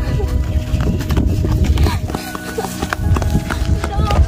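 Background music: several held tones over a rhythmic low beat, with scattered clicks and knocks.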